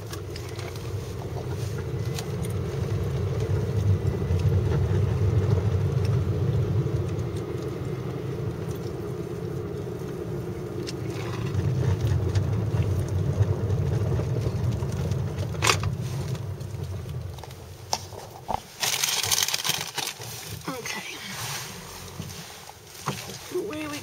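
Car driving, heard from inside the cabin as it turns around: engine and road rumble build over the first few seconds, swell again midway, then die down as the car slows. A short rush of hiss comes about three-quarters of the way through.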